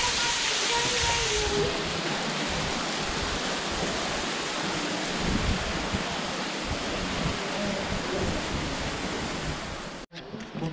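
Steady rushing of falling water at the cave entrance, with low uneven rumbles beneath it; the hiss softens a little about a second and a half in, and the sound cuts off suddenly at the end.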